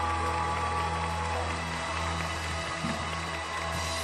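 Live band music holding the closing chord of an Italian pop song, long sustained notes over a steady bass, slowly fading.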